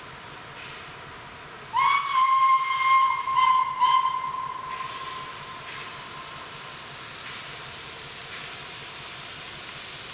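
Steam locomotive whistle on a rack railway: one long blast about two seconds in, then two short blasts, its ring fading out a second or so later.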